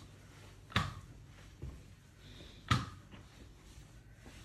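Crutch-assisted walking with M+D crutches and a walking boot: two sharp knocks about two seconds apart as the crutches and boot are set down.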